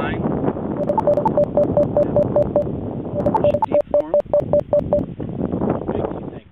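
Rapid electronic beeping: two runs of short, evenly spaced beeps, about five a second, each starting with a sharp click, on a steady tone with an occasional higher note.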